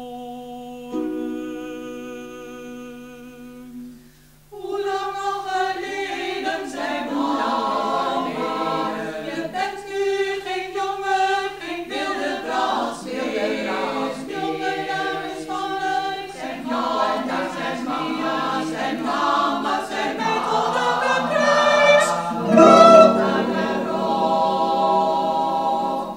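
Women's choir singing in parts, accompanied by cellos. It opens on quiet held notes, then the full choir enters about four seconds in. A low sustained cello note joins near the end.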